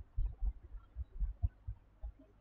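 Several soft, low thumps at irregular intervals, with nothing higher-pitched such as clicks or voice.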